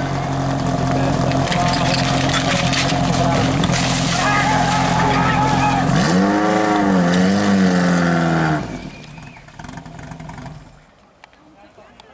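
Portable fire pump engine running steadily at high revs. About six seconds in its pitch rises and wavers, and about two and a half seconds later the engine sound stops abruptly. Shouted voices run over it.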